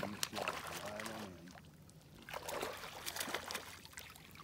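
A hooked fish splashing and thrashing at the water surface beside a boat as it is played toward the landing net, in a string of short, sudden splashes, most of them in the second half.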